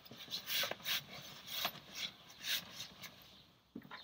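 Fabric and backpack nylon rustling and rubbing as folded T-shirts are stuffed into a trekking backpack, in a few short bursts.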